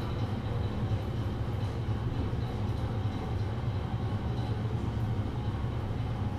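Goldstar passenger elevator car travelling between floors, heard from inside the car: a steady low rumble with a faint high whine above it.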